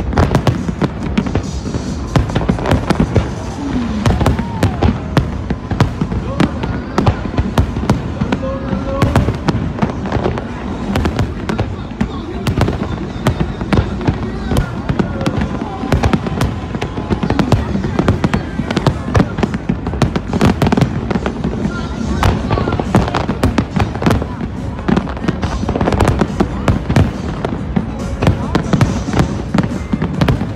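Fireworks display: aerial shells bursting in a dense, unbroken run of loud bangs, several a second.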